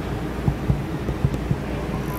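Steady low rumble of a car on the move, with a few light knocks.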